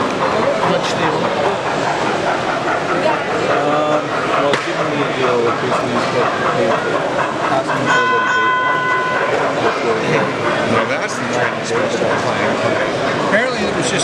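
Steady crowd chatter throughout, over a model railway running. About eight seconds in, a model steam locomotive's whistle sounds one steady note for about a second. A few sharp clanks come near the end.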